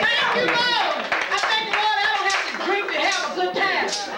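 Hands clapping repeatedly along with a voice coming through a microphone.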